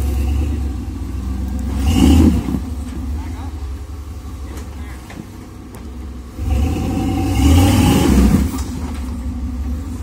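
Rock-crawling Chevy S10's engine running at low revs while it climbs a rock ledge, revved up louder briefly about two seconds in and again for about two seconds past the middle.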